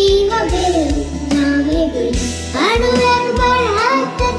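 A young girl singing a Bengali song in a high, clear voice, over an added band backing with a steady drum beat and bass.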